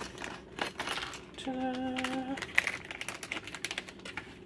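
Plastic LEGO minifigure blind bag crinkling and crackling in the hands as it is opened, with many quick irregular clicks. A short, steady hum is heard about halfway through.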